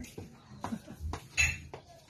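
A few short clicks and clinks with some rustling, from gifts being handled in and around a shiny gift bag. The loudest is a crackly burst about one and a half seconds in.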